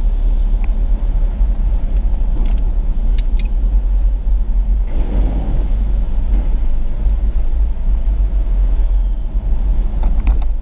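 Steady low rumble of a car driving on a wet road, heard from inside the cabin, with a few faint clicks and a brief swell about five seconds in.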